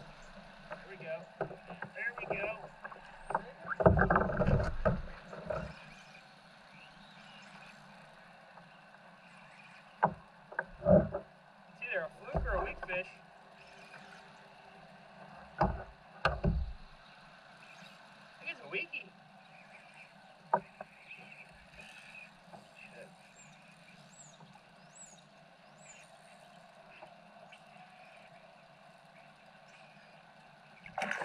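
Scattered knocks and bumps from handling a rod and landing net in a plastic fishing kayak, a few of them sharper, over a faint steady background. A few faint high chirps sound near the end.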